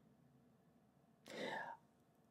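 Near silence, then about a second and a quarter in a soft, half-second breath from the narrator, breathy and unvoiced like a whisper.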